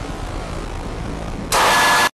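Steady hiss-like noise from the tail of a slowed-and-reverb track. About one and a half seconds in it jumps to a much louder burst of static-like noise carrying a thin high tone, which then cuts off abruptly.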